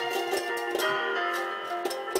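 Banjo strummed in repeated chords a few times a second, the strings ringing on between strokes.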